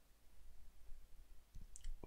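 Faint, irregular clicks and taps of a stylus pen on a drawing tablet as handwriting is written, with a few sharper ticks near the end.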